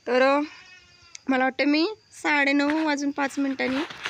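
A woman's voice speaking in long, drawn-out phrases.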